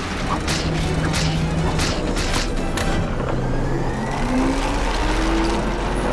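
Cartoon sound effects of a carousel spun up as a weapon: mechanical clanks and several whooshes in the first half, then a rising tone as the ride speeds up.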